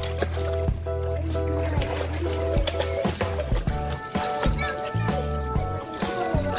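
Background music with held bass notes, a stepping melody and a light beat.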